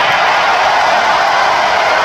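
Large arena crowd cheering and shouting, a loud steady wash of many voices with no single voice standing out.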